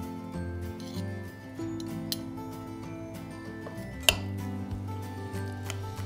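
Background music, with a few clinks of metal spoons against a glass bowl as a chunky tomato mixture is spooned out; the sharpest clink comes a little after four seconds in.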